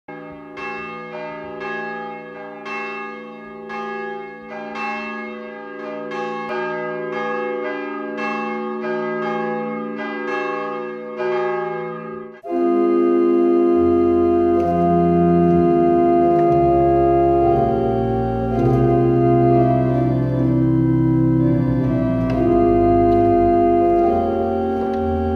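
Church bells ringing, about two strokes a second, each stroke ringing on, until an abrupt cut about halfway through. A church pipe organ then plays loud sustained chords, with deep pedal notes coming in shortly after.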